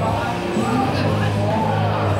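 Small battery-powered antweight combat robots' drive motors whining as they race and shove across the arena floor, over steady background music and crowd voices.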